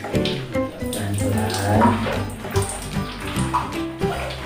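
Tap water running from a wall faucet into a toy water gun's yellow plastic tank as it is refilled, heard under background music.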